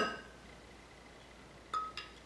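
Two sharp clinks of kitchenware against a drinking glass, each ringing briefly; the first, right at the start, is the louder.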